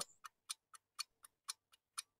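Faint clock-ticking sound effect marking a countdown timer: even ticks about four times a second, louder and softer ticks alternating.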